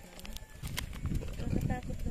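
Faint voices talking off-mic, with scattered light clicks and crunches.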